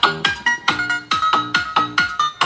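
Electronic music with a bass line and quick plucked, ringtone-like notes, several a second, played from a phone through a bare loudspeaker driven by a homemade fly-swatter amplifier.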